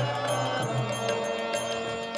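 Devotional kirtan music: a harmonium holds sustained chords while a two-headed mridanga drum keeps a steady rhythm.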